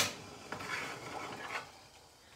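One sharp knock of hard kitchenware, then a few soft rustles and light taps as a mug and tea things are handled.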